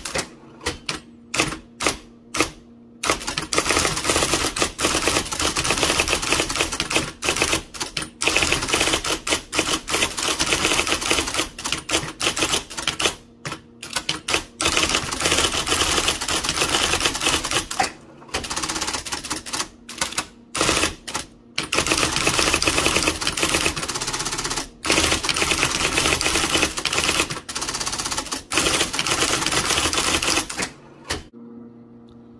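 1980 IBM Selectric III electric typewriter typing quickly, its typeball striking cardstock in a dense run of sharp clacks, broken by short pauses several times.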